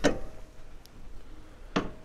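A sharp click, then a short knock near the end, from metal suspension parts being handled at a car's front hub.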